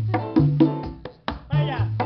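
Live Latin jazz band playing a mambo: conga drums struck by hand in a quick, steady rhythm over sustained low bass notes, with a short sliding tone about three quarters of the way through.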